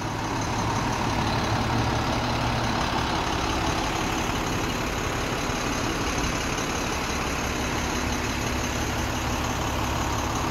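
International 7400 truck's diesel engine idling steadily, a low even hum.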